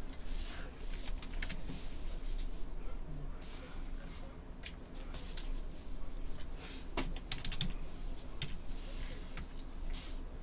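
Typing on a computer keyboard: scattered, irregular light clicks over a low steady hum.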